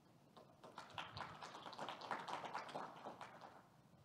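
Light applause from a small audience, a dense patter of hand claps that starts about half a second in and dies away near the end.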